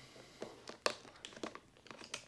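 Faint handling noise: a string of about half a dozen small clicks and rustles, the kind made by moving painting tools about.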